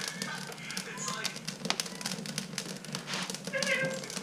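Wood fire crackling and popping in a wood stove, with many quick sharp snaps. A brief high squeal comes near the end as the stove door is swung open.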